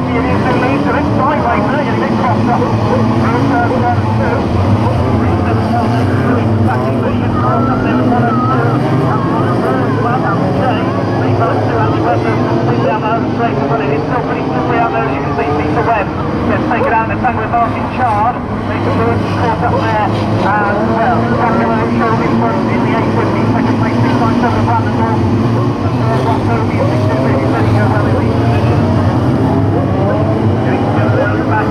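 Several stock car engines running and revving together on the track, many pitches rising and falling over one another over a steady low drone.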